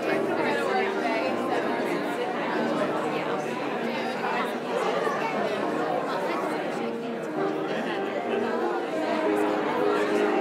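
Many people talking at once in a large hall, a steady hubbub of overlapping conversation with music playing softly beneath it.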